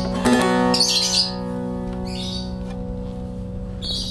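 Short-neck bağlama with a carved (tekne oyma) bowl: a last quick strum about a quarter second in, then the chord rings on and slowly fades. High chirps sound three times over the fading strings.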